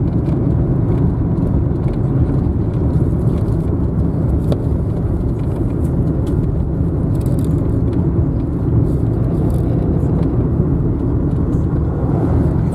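Steady low road and engine rumble heard from inside the cabin of a car driving at speed.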